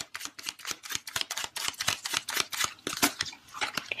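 Tarot cards being shuffled by hand: a rapid, irregular run of light clicks and slaps of card against card.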